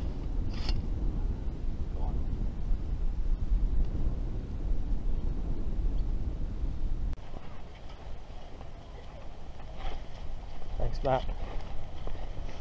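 Strong wind buffeting the camera microphone as a loud, uneven low rumble, cutting off abruptly about seven seconds in. Quieter outdoor sound with brief voices follows.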